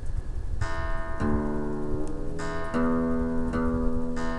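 Single guitar notes ringing one after another, with a new note starting every second or so over the last, as standard tuning is checked note by note against an online tuner.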